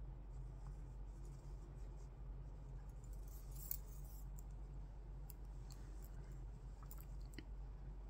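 Faint handling sounds of knitting: a few light clicks of metal circular needles and a brief rustle of yarn, strongest a little before the middle, over a low steady hum.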